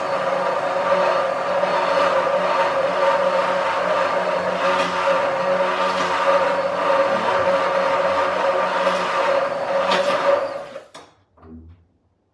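Hand-held immersion blender running steadily in a tall glass beaker, blending tahini garlic sauce. The motor cuts off near the end.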